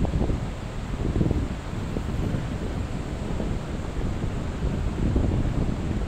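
Low, uneven rumbling noise on the microphone, with no clear strokes or tones.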